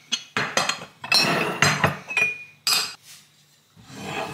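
Empty glass jars being set out, clinking and knocking against each other in a quick series of strikes, one leaving a brief glassy ring.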